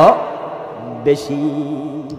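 A man's preaching voice in a sing-song, chant-like delivery through microphones: a phrase ends on a sharp upward sweep, then about a second in he holds one long drawn-out note that slowly fades.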